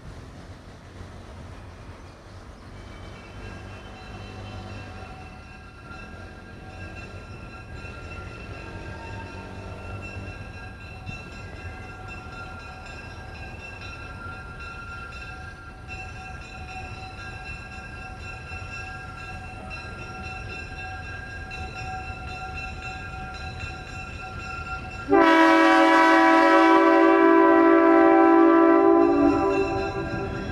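Diesel locomotive approaching with a low engine rumble that slowly grows louder, then a long, loud air horn chord of several tones starting about 25 seconds in and held for about four seconds.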